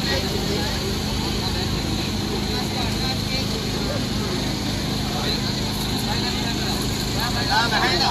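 Indistinct voices of people talking close by, louder briefly near the end, over a steady low hum.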